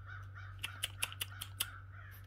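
A bird calling in a quick series of short, repeated notes, with several sharp clicks in the middle, over a low steady hum.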